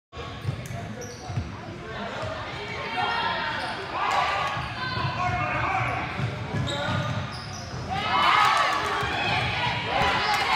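Basketball bouncing repeatedly on a hardwood gym floor during play, with sneakers squeaking and voices calling out across the gym.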